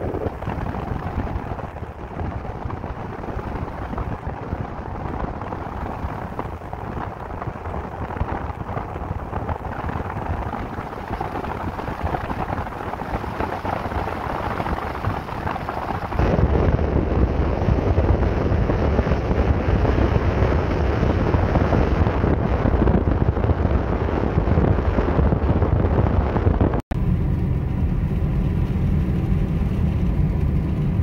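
Car driving along a paved road: a steady rush of wind and road noise. It turns louder and deeper about halfway through, breaks off for an instant near the end, then goes on as a steadier rumble.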